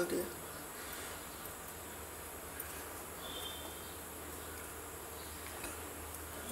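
Faint steady hiss and low hum from a gas stove burner running under a pot of milk. Near the end a wooden spatula starts stirring and lightly scraping the steel pot.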